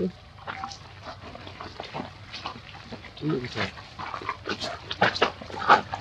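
Macaque monkeys giving a string of short, high-pitched squeaks and chirps, coming thicker in the second half.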